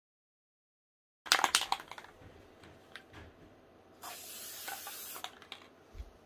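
Aerosol spray adhesive being sprayed onto the back of a paper print: a steady hiss of about a second near the end. It follows a run of loud clicks and knocks a little after the start.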